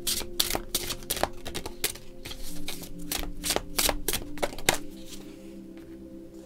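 Tarot deck being shuffled by hand: a quick run of crisp card clicks, about four a second, that stops about five seconds in. Soft background music runs underneath.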